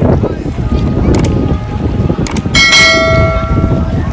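Wind rumbling on the microphone over sea water, with a single bright bell ding about two and a half seconds in that rings for about a second.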